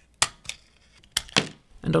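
Scissors snipping through the thin black plastic internal cover of a Redmi K20 Pro smartphone. There is one sharp snip near the start, then two more in quick succession a little past the middle.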